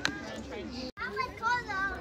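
Young children's voices, with a small child giving a high, wavering vocalization in the second half. There is a short knock at the very start, and the sound cuts out for an instant just before a second in.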